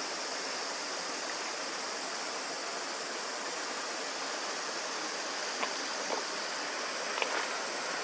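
Steady rush of a nearby mountain stream, an even wash of water noise with no change in level, with a few faint short sounds over it near the end.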